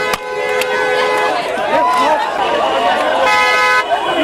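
A car horn honks in a long blast that stops about a second in, then sounds again briefly near the end, over a crowd of people shouting.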